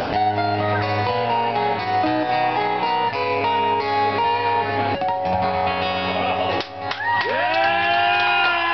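Two acoustic guitars playing together live, picked and strummed notes ringing in a steady pattern. About seven seconds in, a voice comes in on one long held note over the guitars.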